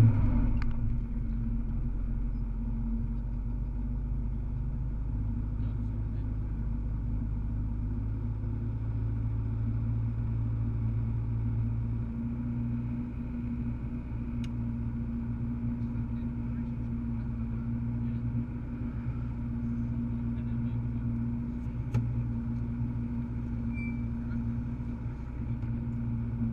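Rally car engine idling steadily, heard from inside the cabin.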